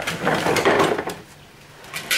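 A loud scraping rustle lasting about a second, followed by a few light clicks and knocks.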